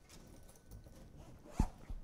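Handling noise from a cell phone being picked up to be muted: two short knocks close together near the end, over faint room tone.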